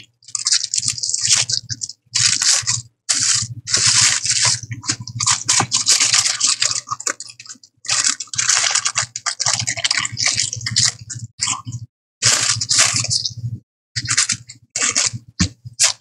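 Thin rice paper rustling and crinkling in irregular stop-start bursts as it is unfolded and smoothed flat by hand.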